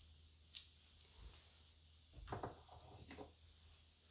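Near silence: room tone with a few faint handling sounds of hands moving things about, a small click about half a second in and soft knocks and rustles a little after two and three seconds in.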